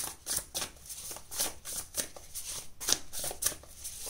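A deck of tarot cards being shuffled by hand: a quick, irregular run of crisp card snaps and slides.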